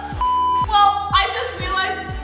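A short censor bleep: one steady high tone lasting about half a second, over background music with a steady beat, followed by a woman's laughing exclamation.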